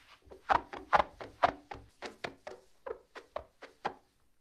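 A quick, irregular series of about a dozen sharp knocks and taps from the listening recording's sound effect.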